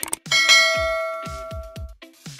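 A bright notification-bell chime sound effect, as the bell icon is clicked: a short click, then one ringing ding about a third of a second in that fades away over about a second and a half. Electronic background music with a steady kick-drum beat plays underneath.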